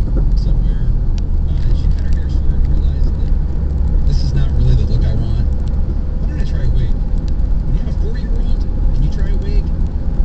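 Road noise inside a moving car's cabin: a steady low rumble of engine and tyres.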